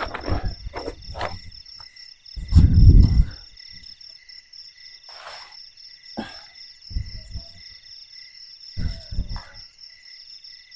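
A steady chorus of crickets and other night insects, several high trills going on together. Over it come irregular low thuds and rustles; the loudest is a rumble of about a second, a little under three seconds in.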